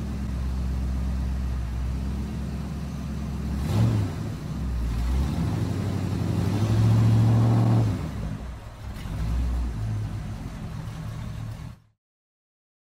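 Car engine revving, swelling and easing several times, loudest about seven seconds in, then cutting off abruptly just before the end.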